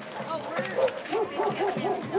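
Dog barking in a quick run of short yaps, about five a second, starting about half a second in, over crowd voices.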